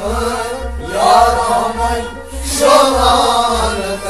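A man singing a melodic, chant-like song over instrumental accompaniment with a steady low drum pulse.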